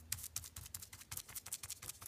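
Paintbrush working primer along wooden trim: a rapid, uneven patter of short scratchy brush strokes, around ten a second.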